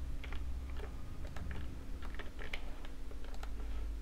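Computer keyboard typing: irregular, quick key clicks, over a steady low hum.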